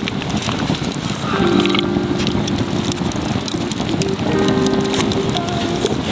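Background music of long held notes, over a campfire crackling with many small sharp clicks.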